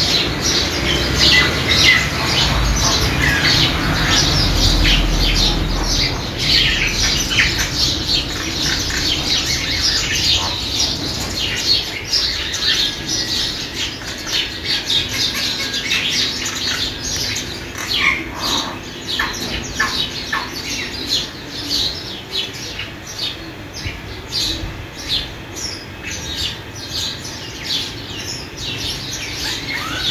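Nature recording of many birds calling: rapid, overlapping short chirps and squawks that go on without a break and thin out a little in the second half.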